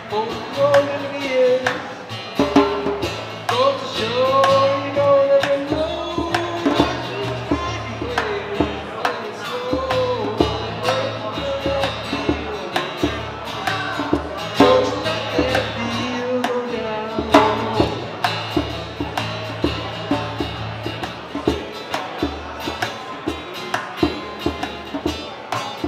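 Live acoustic guitar strummed along with a djembe beating a steady rhythm, with male singing over them.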